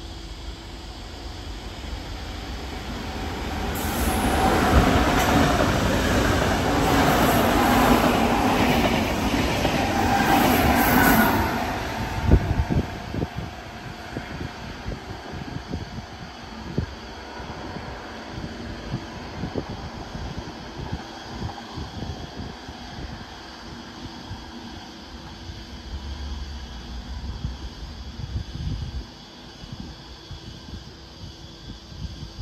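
A double-deck Sydney electric train running into the platform: a rumble that builds over the first few seconds, stays loud for about eight seconds with a high squeal near its end, then cuts off sharply. After that there is only quieter gusty low rumbling.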